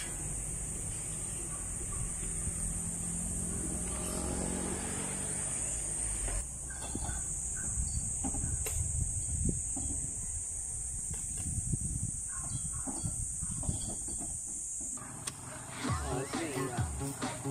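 Rural outdoor ambience: a steady high-pitched drone, a rooster crowing once about four seconds in, and rustling and crunching of footsteps through undergrowth. It changes abruptly near the end.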